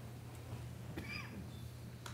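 Quiet room tone with a steady low hum, and a brief faint high-pitched squeak about a second in.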